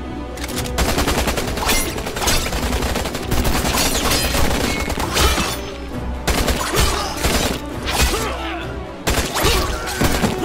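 Bursts of rapid automatic rifle fire, with short lulls between them, over loud dramatic film score music.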